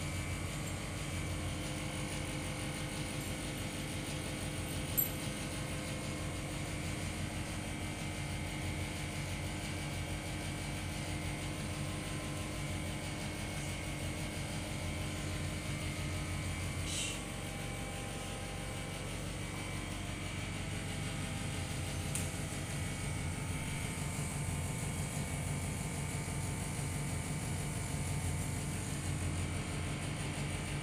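A steady mechanical hum, like a room fan or air-conditioning unit, with a sharp click about five seconds in.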